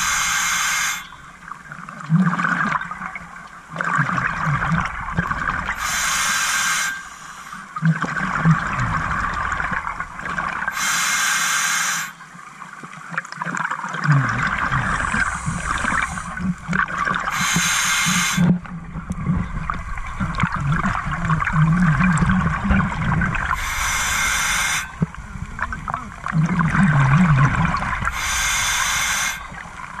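A scuba diver breathing through an open-circuit regulator underwater: a short hiss of breath about every six seconds, each followed by several seconds of rumbling, gurgling exhaled bubbles.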